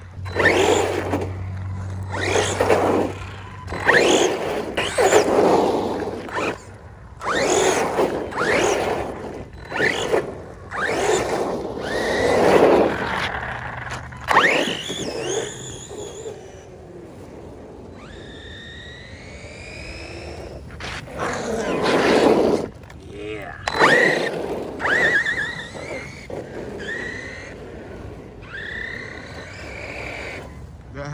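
Redcat Kaiju brushless RC monster truck driven on wet pavement in repeated bursts of throttle, roughly one every second or two, with motor whine and tyre hiss and spray. Past the middle the bursts die down briefly and only a thin rising and falling whine is left before the bursts start again.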